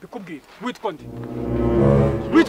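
A deep, droning horn blast starting about a second in and swelling louder, a sustained low tone with many overtones. Brief speech comes just before it.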